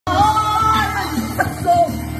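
A woman singing karaoke into a microphone over a loud backing track, holding one long note for about the first second.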